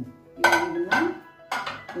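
Aluminium pressure cooker clanking twice, about half a second and a second and a half in, each knock followed by a short metallic ring.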